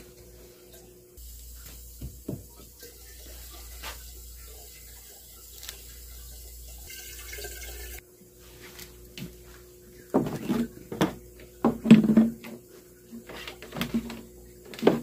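Water running steadily into a plastic jug for about seven seconds, cutting off abruptly. A few seconds later come several knocks and thumps of a plastic water jug being set down and handled.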